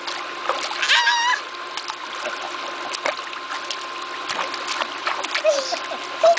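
A baby slapping the pool water with his hands: a run of small, irregular splashes.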